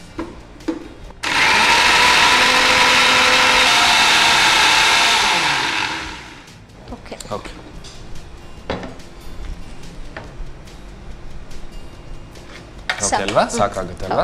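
Electric mixer grinder grinding a masala paste in a small steel jar. It starts abruptly about a second in, runs steadily for about four seconds, then winds down.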